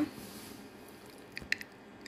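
Faint, soft sounds of a paintbrush working acrylic paint onto a wooden spatula, with a few small clicks about one and a half seconds in.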